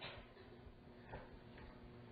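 Near silence: faint room tone with a couple of soft ticks, one about a second in.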